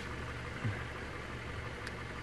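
Low, steady hum of a car engine idling. There is a faint click near the end.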